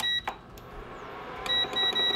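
Countertop electric burner beeping at its control panel: one short beep at the start, then a run of short, evenly spaced beeps from about a second and a half in, with a faint steady hum from the running unit in between.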